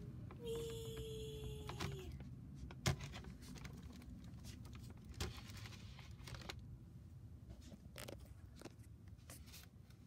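Clear plastic clamshell container being handled: scattered faint clicks and knocks of the plastic, with a short steady tone that falls slightly in pitch and some crinkling near the start.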